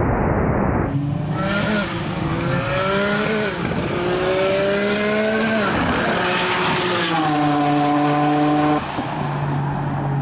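Mitsubishi Lancer Evolution IX's turbocharged 4G63 four-cylinder at full throttle down a drag strip: the revs climb and drop sharply with each quick sequential-gearbox upshift, about four shifts in all. The first second is a muffled rush from inside the car.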